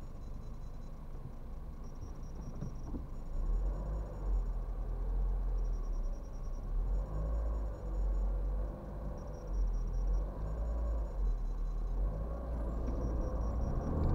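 A car's engine heard from inside the cabin, a steady low rumble that grows stronger about three seconds in.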